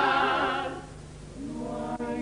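A Cádiz carnival chirigota singing in chorus: a held note with a wavering vibrato dies away about a second in, then the voices come in again more softly near the end.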